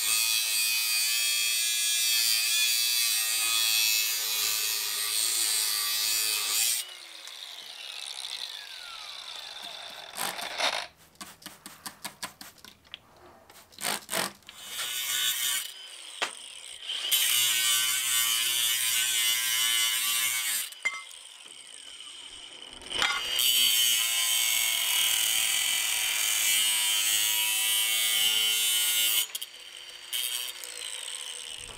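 Ryobi 18V brushless cordless angle grinder with a cutoff wheel cutting through quarter-inch-thick steel tubing in three long passes. Each pass ends with the grinder's whine falling away as the wheel spins down. In the gaps there are scattered clicks and knocks.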